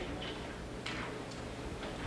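Room tone with a steady low hum and three faint clicks, roughly half a second apart.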